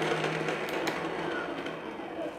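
Ryobi 36V HP brushless crushing shredder running empty on speed one, a steady motor hum, then winding down and gradually fading once it is stopped.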